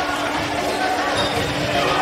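Indoor volleyball rally in an echoing gym: a ball thudding as it is played, amid players' and spectators' voices, over a steady low hum.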